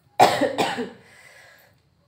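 A woman coughing: two coughs close together shortly after the start, trailing off and fading out by about the middle.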